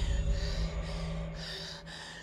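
A woman's short, frightened gasps and breaths over a steady low drone that fades away.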